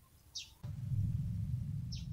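Two short, high bird chirps, one near the start and one near the end. A steady low rumble comes in about half a second in and runs underneath.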